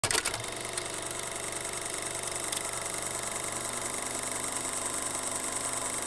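A small machine running steadily with a fine, rapid mechanical rattle, after a few clicks at the very start.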